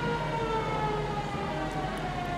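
A siren sounding, its pitch falling slowly and steadily over a couple of seconds, heard from inside a car.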